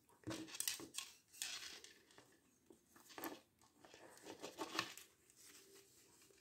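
Faint handling noises from an action figure and its cloth robe: a few short bursts of rustling and small plastic clicks as it is posed and its accessories are picked up.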